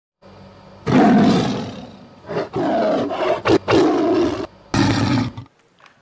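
Loud animal roaring, like a big cat: a long first roar that fades, then several shorter roars with brief breaks between, ending abruptly about half a second before the end, over a faint low hum in the first second.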